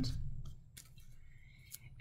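Faint handling sounds of hands pressing a glued paper napkin onto a glass jar, with a couple of light clicks.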